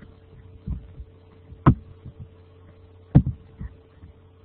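Several dull, irregular thumps, one of them doubled, over a steady low electrical hum.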